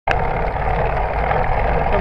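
Wind buffeting the microphone of a handlebar-mounted GoPro Hero 3, with tyre and road rumble from a bicycle rolling along asphalt: a steady, heavy low rumble that starts abruptly with a click.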